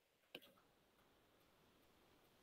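Near silence with a single faint click about a third of a second in: a stylus tapping the tablet screen.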